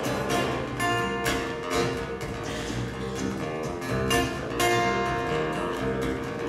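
Two acoustic guitars strumming and picking an instrumental folk passage, with chords struck about twice a second.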